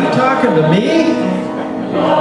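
Choir singing held chords with one man's solo voice at the microphone over them, swooping up and then down and back up in pitch in the first second.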